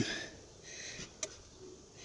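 Quiet background hiss with a single faint click a little past the middle.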